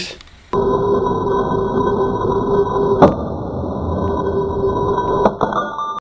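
Worn bimetal hole saw in a drill press grinding through the bottom of a Pyrex glass dish in a silicon carbide and water slurry: a steady gritty grinding with ringing tones from the glass, starting suddenly half a second in. Sharp cracks cut through it about three seconds in and again near the end.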